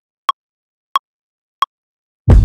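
Three short, pitched electronic metronome clicks from music production software, evenly spaced on a steady beat of about one and a half clicks a second.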